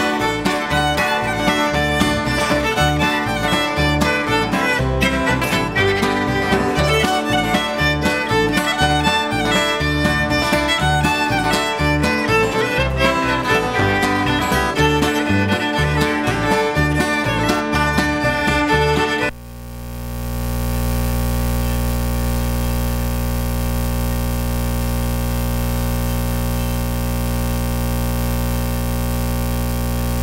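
Bluegrass string band playing an instrumental tune with the fiddle leading over upright bass and acoustic guitar, just after a count-off. About two-thirds of the way through, the music cuts off suddenly and a steady, unchanging hum of several tones takes over at the same loudness.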